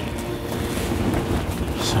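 Wind blowing through and around a fabric hunting blind, a steady rushing noise with low rumble on the microphone.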